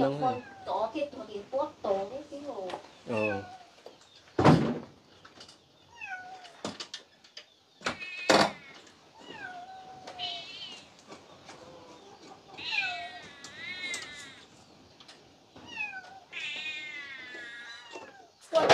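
A cat meowing repeatedly: short falling meows and several longer, wavering high-pitched calls. Two sharp knocks come in between.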